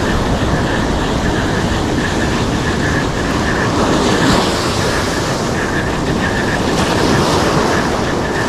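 Sea surf breaking and washing up a sandy beach, a loud, steady rushing noise.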